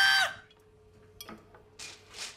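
A voice cries out briefly at the start. Then it is almost quiet, with a faint steady hum and two soft hissing swells near the end.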